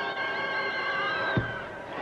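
Basketball arena crowd noise with several held musical notes sounding over it. The notes stop about a second and a half in, just after a short low thump, and the crowd noise carries on.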